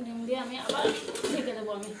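A stainless steel plate being set over an iron karahi as a lid, metal scraping and clinking against the rim.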